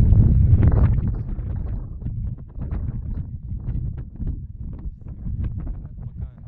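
Wind buffeting the microphone for about the first second and a half, then a run of irregular light knocks and scuffs: footsteps on a stony path.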